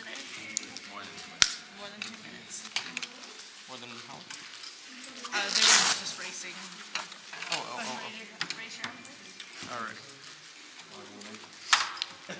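Indistinct talk in a small room, with a sharp click about a second and a half in and a brief, loud rasping noise near the middle.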